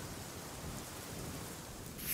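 Faint, steady hiss of background noise with no distinct events, like light rain.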